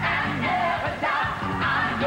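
Live gospel music: a woman singing lead over a band, with a choir of singers behind her, continuing without a break.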